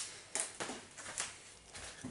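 Footsteps walking up toward the microphone: a handful of short, sharp steps, the first the loudest.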